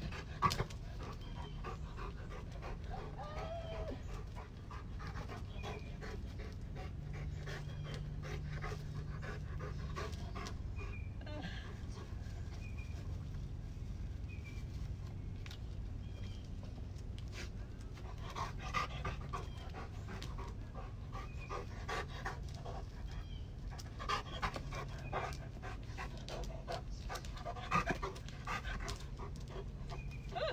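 A dog panting, over a steady low hum, with a few short clusters of sharper sounds in the second half.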